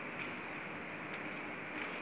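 Quiet room tone: a steady low hiss, with a couple of faint soft clicks.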